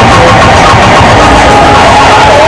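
Loud fairground music playing at a spinning fairground ride, mixed with the noisy din of the ride and the crowd, with a steady high tone held throughout.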